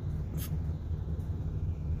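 A steady low hum with one brief click about half a second in.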